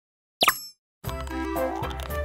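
A short cartoon 'plop' sound effect with a quickly falling pitch, followed about a second in by animation background music with a bass line and melody.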